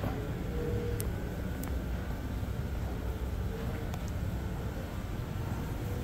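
Steady low background rumble of a large indoor exhibition hall, with a couple of faint clicks about a second in.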